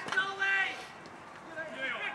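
Men's voices calling out across an outdoor football pitch: a shout in the first second and another near the end, with quieter outdoor ambience between.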